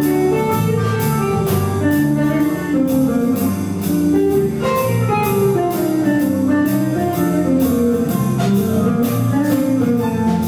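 Jazz quartet playing live, the electric guitar leading with single-note melodic lines over electric bass and drums. Cymbal strokes keep a steady beat of about three a second.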